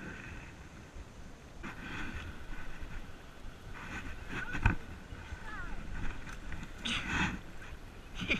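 A bass being scooped into a landing net beside a boat: a sharp thump about halfway and a short burst of splashing near the end, over wind on the microphone and brief indistinct voices.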